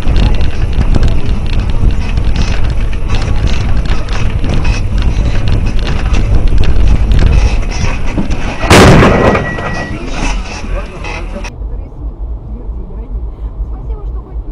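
Dashcam car rumbling and rattling loudly over a broken, potholed road surface. About nine seconds in comes one loud crash, the collision with a loose cart in the road, with a short high ringing tone after it.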